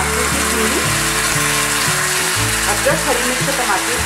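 Tomato, green chilli and ginger purée hitting hot ghee in a stainless steel pan and sizzling steadily as it fries with the tempered spices.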